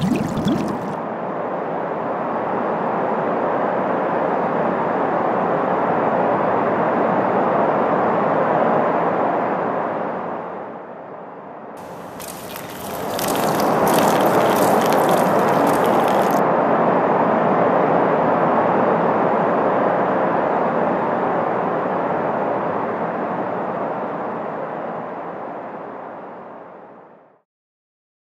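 Steady rushing and splashing of liquid being poured out, dipping briefly about halfway, with a few seconds of crackling just after the dip, then trailing off near the end.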